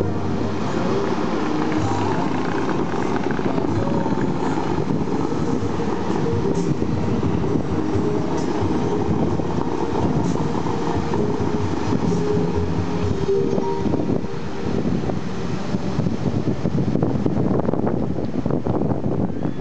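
Steady rushing roar of the Bellagio fountain's water jets spraying and falling back into the lake, with the show's music faint underneath.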